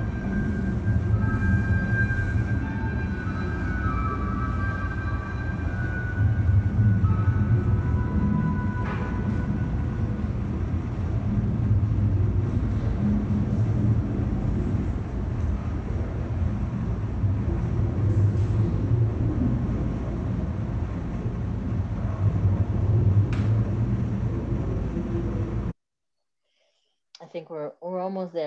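Soundtrack of a played-back installation video: a steady low rumble, with faint held high tones over the first few seconds and a couple of brief clicks. It cuts off suddenly just before the end.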